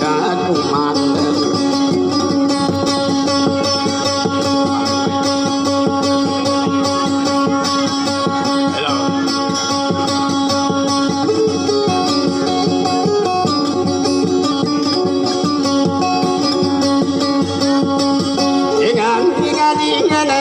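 Instrumental passage of a dayunday folk song: a plucked string instrument playing over steady held notes, with a voice singing again near the end.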